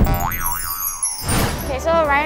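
Cartoon transition sound effects over music: a wobbling boing and a twinkly sweep falling in pitch, then a brief whoosh about a second and a half in.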